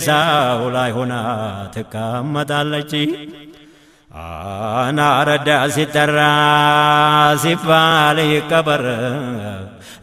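A man's voice chanting devotional verse in long, wavering melismatic notes. It fades out about three to four seconds in, breaks off briefly, then resumes with long held notes.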